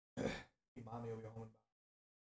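A man's voice: a quick, sharp intake of breath, then a short voiced sound under a second long, like a sigh or a murmured word.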